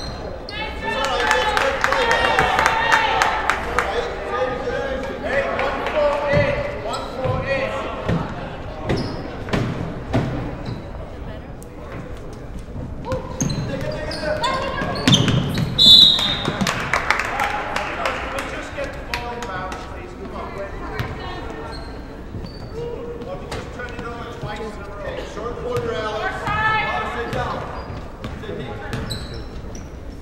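Basketball game in a gym: the ball dribbling and bouncing on the hardwood floor, with shouts from players and spectators echoing in the hall. About halfway through, a short referee's whistle blast stops play.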